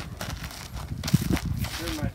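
Horse's hooves stepping and scuffing on packed dirt as it walks its hindquarters around in a turn on the forehand, a few dull thuds, the strongest a little after a second in.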